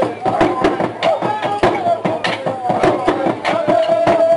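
An ensemble of tall Burundian-style drums beaten hard in a fast, irregular rhythm of many strokes a second, with a voice chanting over them and holding one long note near the end.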